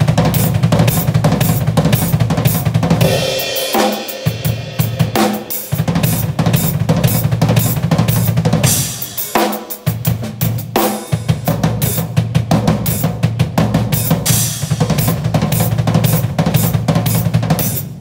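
Acoustic drum kit playing a fast gospel-chops phrase: dense runs of snare, tom and bass drum strokes with cymbal crashes, broken by a few short pauses.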